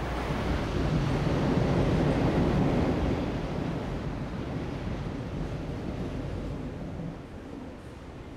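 Outdoor street noise picked up by a phone's microphone, with a car driving up. The sound swells about one to three seconds in and then fades.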